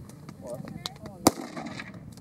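A single loud rifle shot about a second and a quarter in, from a scoped rifle fired off a shooting rest, with a few fainter sharp cracks around it.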